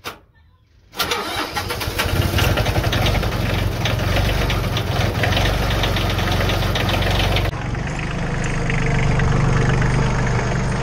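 Cub Cadet 7000-series tractor engine starting: a click, then about a second in the engine catches and runs loud and rough. Near the end it settles to a steadier, lower-pitched run.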